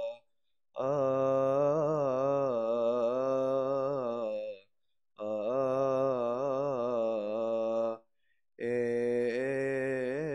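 A man chanting a Coptic Orthodox Passion Week hymn in long, slowly wavering held notes, three phrases broken by brief silences.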